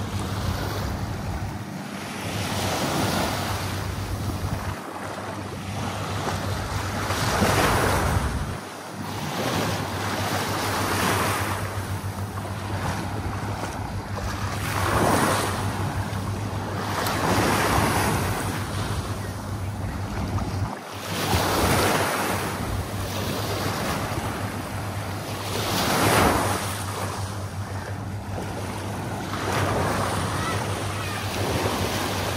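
Small ocean waves lapping and washing up a sandy beach. Each wash swells and fades every three to four seconds, with wind rumbling on the microphone underneath.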